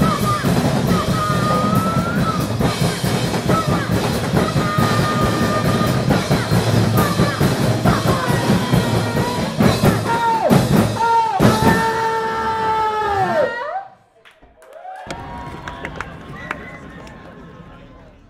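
Live drum-kit pounding with cymbal crashes under group vocals that hold long, wavering notes, some bending downward near the end. The music cuts off suddenly about 13 seconds in, leaving a quieter, fading sound.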